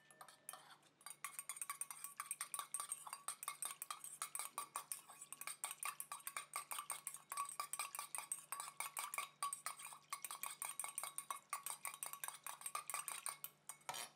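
Small metal whisk stirring a watery liquid in a stainless steel bowl and striking the bowl's sides with fast, even clinks that ring. It starts about a second in and stops just before the end.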